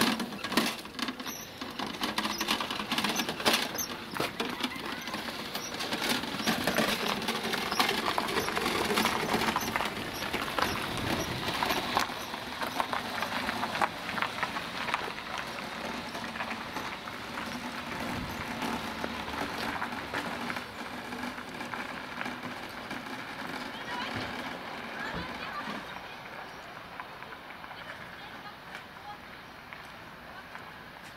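A metal cart, a pram chassis carrying a metal tub, rattling and clattering as it is wheeled over rough asphalt. The rattle is loudest in the first half and fades toward the end.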